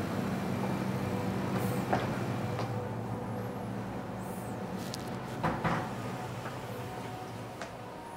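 A door being opened and handled, with a few clicks and knocks, the loudest about five and a half seconds in, over the steady hum of a split-type air conditioner.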